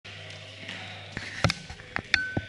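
Squash ball struck with a racket and rebounding off the court's walls and floor: a few sharp smacks in the second half, the loudest pair about a second and a half in, over a low steady hum.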